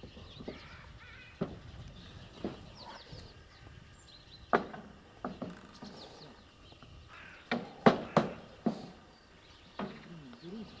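Irregular sharp knocks of a hammer on the roof, single and in quick runs of two or three, loudest about eight seconds in.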